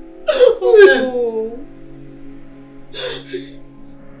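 A man groaning in pain: a couple of falling moans in the first second and a half, then a short breathy gasp near the end, over sustained background music.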